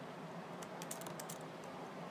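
Computer keyboard keys clicking in a quick run of several keystrokes over about a second in the middle, over a faint steady room hiss.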